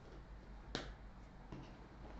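A single sharp click a little before the middle, then a softer tick, over quiet room tone with a low hum.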